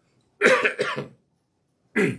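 A man coughing into his fist: a quick run of two or three coughs about half a second in, then one more cough near the end.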